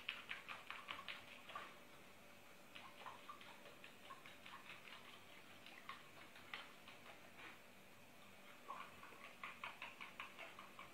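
Faint quick ticking from a small hand-held jar being shaken to beat an egg white inside it, busiest in the first two seconds and again near the end.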